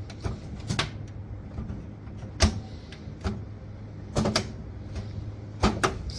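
Automatic gear shift lever being worked through its gate, clicking and clunking as its button and detent plate catch at the gear positions; about eight sharp clicks spaced unevenly, a pair of them near the end.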